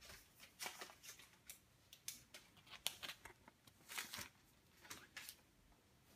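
Faint handling noises: irregular light rustles and small clicks, a dozen or so spread over several seconds.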